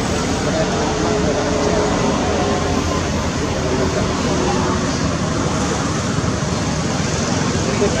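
Steady outdoor background noise with faint, indistinct voices in the distance.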